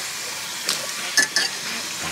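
Hot oil sizzling steadily in a small saucepan as puffed papadum balls deep-fry, with a few sharp clicks of a metal fork against the pan about halfway through.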